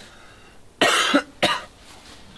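A man coughing twice: a harsh cough about a second in, then a shorter one just after.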